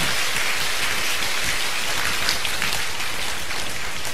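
Audience applauding steadily, a dense crackle of many hands clapping.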